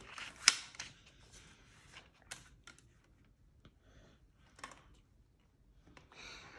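Paper pages of a picture book being turned by hand: one sharp page flap about half a second in, followed by a few faint rustles and taps.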